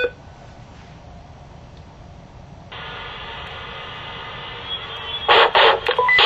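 Short key beep from a Cobra HH425 handheld VHF/GMRS radio. About three seconds in, its squelch opens as the scan stops on a GMRS channel carrying another radio's transmission: a steady hiss with a faint hum from its speaker. Near the end come three loud short bursts.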